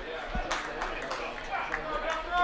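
Ballpark ambience: faint, scattered voices from a sparse crowd in the stands.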